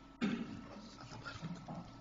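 A brief voice-like sound away from the microphone, starting suddenly about a fifth of a second in and fading within half a second, then faint murmur in the room.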